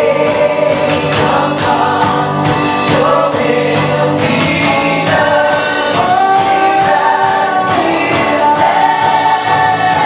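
Live contemporary worship song: a woman leads the singing over strummed acoustic guitar and a band with a steady beat, the congregation singing along with her.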